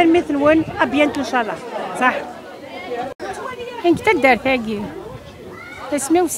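Speech only: a woman talking, with chatter of other voices around her.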